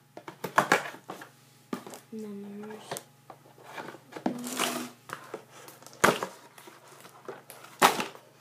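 Packing tape on a cardboard box being cut with a knife and pulled off, with crackling, scraping and clicks of tape and cardboard, and two sharp knocks, about six seconds in and near the end. A short hum from the person working breaks in twice.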